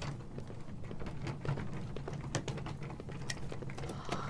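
Quiet indoor room tone: a steady low hum with scattered faint light clicks.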